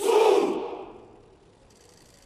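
Ranks of honour-guard soldiers shouting a reply in unison, the customary "Sağ ol!" answer to a leader's "Merhaba asker!" greeting. It is one short loud call that rings with echo and dies away over about a second.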